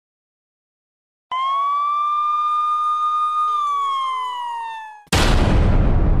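A single siren-like wail that rises slightly, holds steady, then slides down in pitch. About five seconds in it is cut off by a sudden loud noisy crash that slowly fades.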